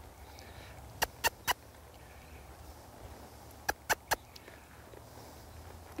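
Two sets of three quick tongue clicks (clucks), about two and a half seconds apart: a rider clucking to a young horse to ask it to keep walking forward.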